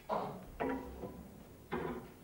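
A man's voice: a few short spoken words of commentary, with no ball strike.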